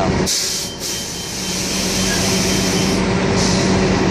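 A heavy vehicle's engine running steadily, with a loud hiss of released air starting suddenly about a quarter second in and lasting nearly three seconds, then a second, shorter hiss near the end.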